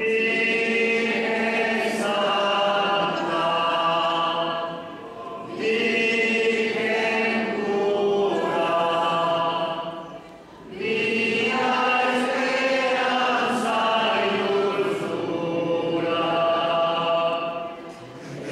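A group of voices singing a hymn in long, held phrases, with short breaks between phrases about 5 and 10 seconds in.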